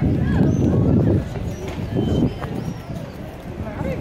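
Street ambience with people's voices close by, with a loud low rumble through about the first second.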